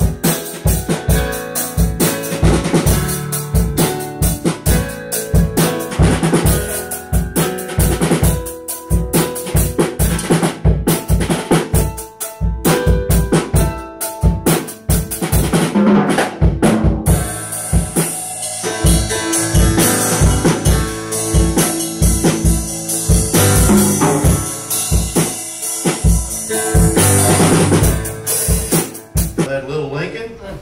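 Pearl drum kit played live: a fast, steady beat of bass drum and snare with tom hits and cymbals. The cymbals ring more heavily through the second half, and the playing drops away at the very end.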